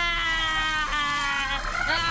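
Cartoon soundtrack effect: a held, nasal pitched tone slowly sinking in pitch, then a rising swell near the end as the angry character starts to glow red.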